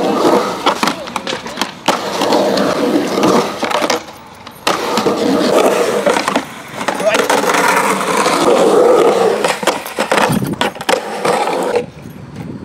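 Skateboard wheels rolling on smooth concrete, with repeated sharp clacks of the board's deck and wheels hitting the ground during flip-trick attempts. There is a brief lull about four seconds in.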